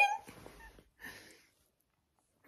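The end of a high laugh rising steeply in pitch, cut off just after the start, then a faint breath about a second in and near silence.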